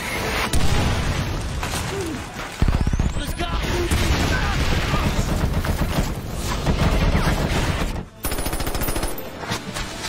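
Sustained gunfire from automatic rifles and machine guns in a film battle mix, dense and continuous, with a very rapid burst of shots about two and a half seconds in and a brief drop in the din near eight seconds.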